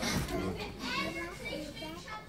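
Children's voices talking indistinctly, quieter than the spoken lines around them.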